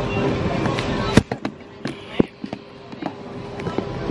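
Store background noise with voices and music, broken about a second in by one sharp knock; the sound then drops quieter with several smaller knocks and clicks before the background noise returns near the end.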